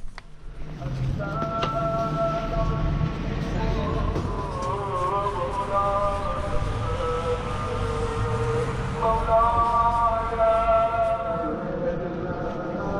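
A man chanting in long held notes that waver and bend, breaking off briefly about nine seconds in and starting a new phrase.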